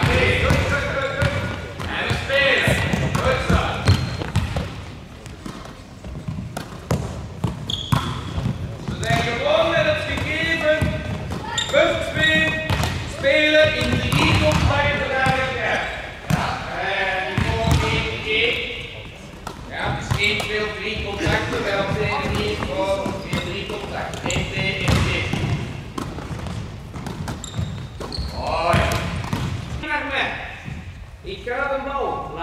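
Volleyballs struck by hand and bouncing on a sports hall floor, a string of short sharp hits through the whole stretch, with young players calling out and chattering. It all echoes in a large hall.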